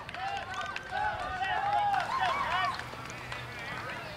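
Several high-pitched voices calling and cheering over one another, with no clear words, strongest between about one and three seconds in: youth ballplayers and spectators shouting at a baseball game.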